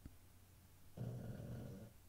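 A pug gives a low grunting vocal sound lasting just under a second, starting about a second in.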